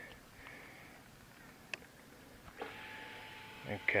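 A 2016 Triumph Thruxton's ignition is switched on with the engine off: a single faint click, then about a second later a steady electric hum with a thin whine, typical of the fuel pump priming.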